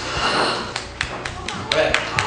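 A man blowing a plume of liquid nitrogen vapour out of his mouth, heard as a short breathy hiss, followed by a run of scattered sharp claps from the audience.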